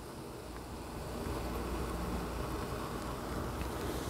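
Steady fizzing hiss of a vinegar, baking soda and antacid-tablet mixture foaming up in a glass, getting a little louder about a second in.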